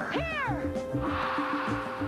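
A movie monster's shrill screech, rising then falling over about half a second, over film music with a steady beat. A hiss comes in about a second in.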